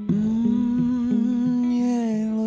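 A man humming one long held note over softly plucked guitar, in a live solo performance.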